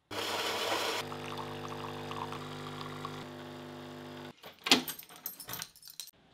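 Keys at a door lock: a sharp metallic click about three-quarters of the way through, followed by lighter jingling and clicks. Before it comes a steady rushing sound with a humming drone for about four seconds.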